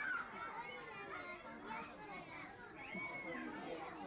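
Background chatter of a crowd of children, many high voices talking and calling out over one another.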